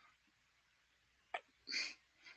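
Faint background hiss, then a single sharp click a little past halfway and, near the end, a short hissing breath into a microphone on a conference call.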